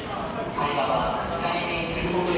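Footsteps of a walking crowd on a hard station floor, a steady patter of many shoes, with voices talking over them.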